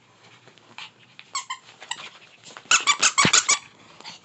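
Squeaky dog toy being chewed by a Chihuahua puppy: a couple of faint squeaks, then a quick run of about seven loud, sharp squeaks in the second half.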